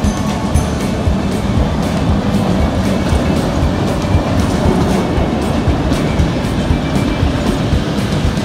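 Background music laid over a historic electric train rolling past over station points, its wheels clattering on the rails.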